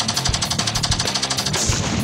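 A burst of rapid automatic gunfire, more than ten shots a second, that stops about one and a half seconds in, over background music.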